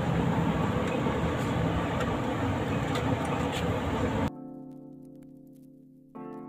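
Handheld electric wood router running loud, a dense rough noise. About four seconds in it cuts off suddenly and soft piano music takes over.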